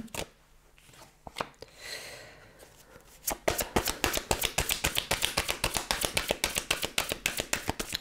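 A deck of oracle cards being shuffled by hand: after a quiet start with a soft slide of cards near two seconds, a fast, steady run of papery clicks begins about three and a half seconds in and keeps going.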